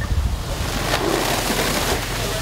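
Steady rushing roar of a heavily burning roof under an elevated hose stream, rising in about half a second in and holding steady. Wind buffets the microphone with low rumbles at the start.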